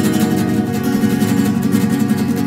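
A rock band playing an instrumental passage: rapidly strummed guitar over held bass notes.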